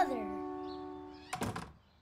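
The cartoon score's final held chord fades away, with a short gliding vocal note over it at the very start. About a second and a half in comes a quick pair of thunks.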